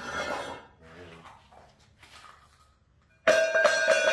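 Heavy round steel base plate dropped onto the floor about three seconds in: a sudden loud clang that rings on with several clear metallic tones and fades over about a second and a half.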